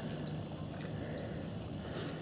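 Faint scratching as fingers pick a small stone arrowhead out of loose soil, a few soft ticks over a steady background hiss.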